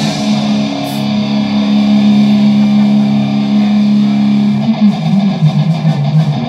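Live rock band: an electric guitar chord held and left ringing for several seconds with the drums mostly quiet, then short repeated notes pick up again near the end.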